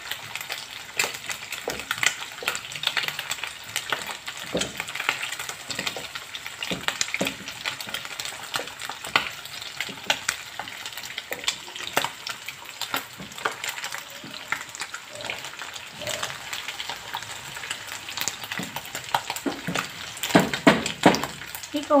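Food frying in hot oil, a steady sizzle with many small crackles and pops, while a wooden spoon scrapes and turns cooked white rice in a nonstick pan.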